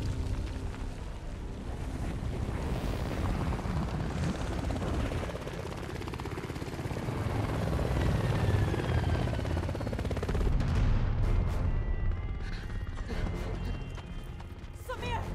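Film sound mix of hovering attack helicopters, their rotors beating, over background music, loudest around eight to eleven seconds in. A few sharp impacts come near the end.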